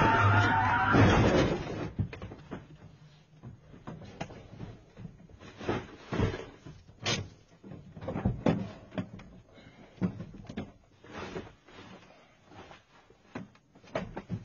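A loud, rough noise for about the first two seconds, then scattered knocks and thumps at irregular intervals.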